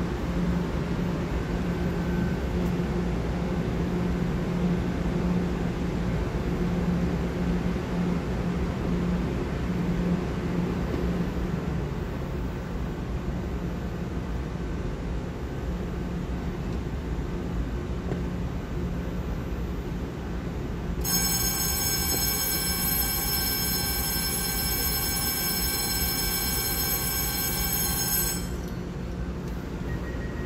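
A TRA EMU900 electric multiple unit standing at an underground platform, with a steady low hum. About two-thirds of the way through, a high electronic tone sounds for about seven seconds and cuts off suddenly.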